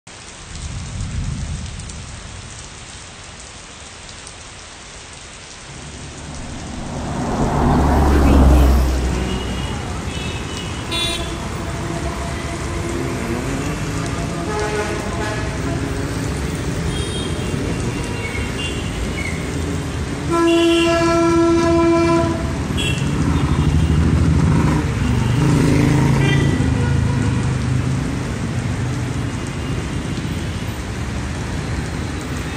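Rain and road-traffic ambience: a steady hiss of rain on a road with vehicles passing. A low rumble swells and fades about eight seconds in. A horn sounds once for about a second and a half around two-thirds of the way through.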